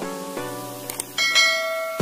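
A couple of short clicks, then a bright bell chime about a second in that rings on: the click-and-notification-bell sound effect of a subscribe-button animation.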